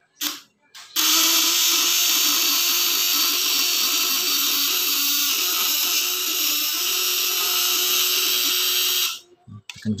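Home-built electric fish shocker's vibrating contact-breaker points (platina) running on 24 V with the points screwed tight, giving a loud, steady, crackling buzz. It starts suddenly about a second in after two short clicks and cuts off just before the end. The tight setting gives more power and draws more from the batteries.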